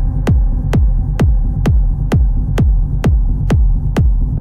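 Techno track in a DJ mix: a four-on-the-floor kick drum, about two beats a second, each hit a falling thud, over a steady bass drone. The sound is muffled, the treble filtered away.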